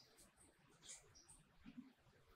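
Near silence: room tone, with a few faint, brief high-pitched ticks.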